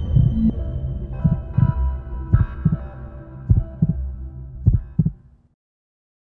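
Heartbeat sound effect in a TV channel ident: paired low thumps like a heartbeat, about one pair a second, over a low droning hum. It cuts off about five and a half seconds in.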